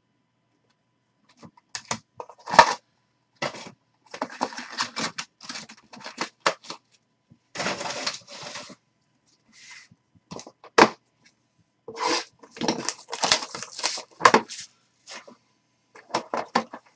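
Handling noise of hard plastic card holders and a cardboard card box: a run of sharp plastic clacks and short papery rustles, starting a second or so in, with the loudest clack about two and a half seconds in.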